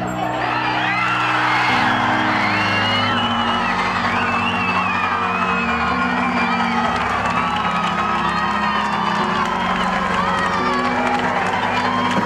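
Stadium crowd cheering and shouting for a goal, the cheer swelling in the first couple of seconds and staying loud, over background music with a steady bass line.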